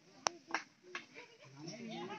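Voices and calls of players and onlookers across an open field, with one sharp crack about a quarter second in.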